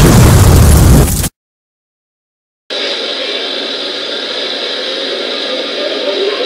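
Loud blast of fire and explosion, a movie-style sound effect, that cuts off suddenly about a second in. After a moment of silence, a steady hissing noise starts.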